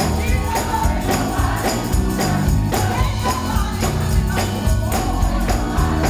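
Live gospel song: a woman's lead vocal through the church sound system, with a band beneath her and percussion keeping a steady beat of about two strokes a second.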